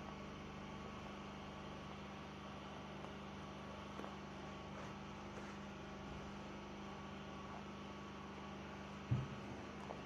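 Faint, steady electrical hum with low room noise and a few faint small ticks. There is a brief low sound near the end.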